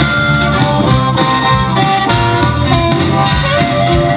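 Live electric blues band in an instrumental passage: a blues harmonica holds and bends notes over electric guitar, bass and a steady drum beat.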